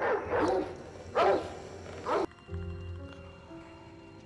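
Film soundtrack: a dog barking twice in the first two seconds, with pitch bending up and down, then soft sustained music notes.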